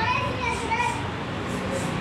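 Young children's voices: short high-pitched calls and chatter from a group of kids. A low steady hum comes in about halfway through.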